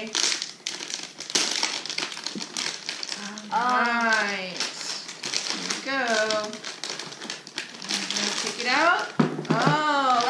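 Shiny gold foil wrapping being handled and unwrapped, crinkling in quick irregular crackles, with a voice sounding briefly a few times in between.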